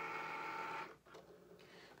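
Cricut cutting machine's carriage motors whirring with a steady pitched tone while it runs a print-then-cut job. The tone is louder for about the first second, then runs on more quietly.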